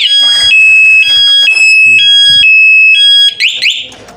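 Bohante remote motorcycle alarm siren sounding, set off by switching on the ignition while the alarm is armed. It is very loud and alternates between a higher and a lower tone about every half second. Then it breaks into a quick rising-and-falling sweep and cuts off near the end.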